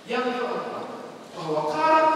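Speech only: a man preaching loudly in two phrases, with long drawn-out vowels.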